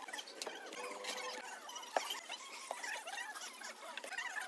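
Faint, sparse clicks and taps of terracotta floor tiles being set by hand into wet mortar, with short high squeaks mixed in.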